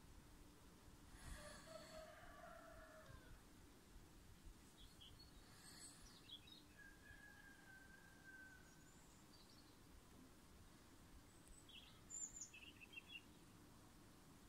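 Near silence: faint background hiss with faint distant bird calls, a longer call about a second in and short high chirps scattered later, with a small cluster near the end.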